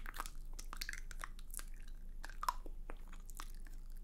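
Teeth biting and nibbling the tip of a pen at the lips, making a soft, irregular string of small clicks.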